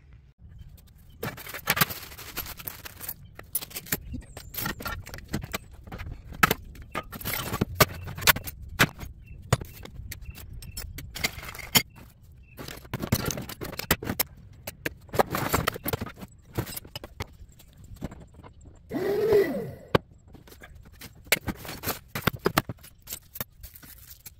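Loose scrap metal parts being handled and sorted in plastic totes: irregular clinks, clatters and scrapes of metal pieces knocking together and sliding against each other, with one louder rasp about three-quarters of the way through.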